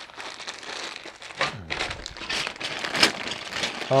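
Clear plastic bags of building-set parts crinkling as they are handled and turned over, with irregular crackles.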